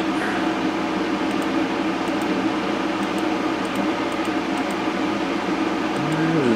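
Steady mechanical hum with an even hiss, like a room fan or air-conditioning unit running.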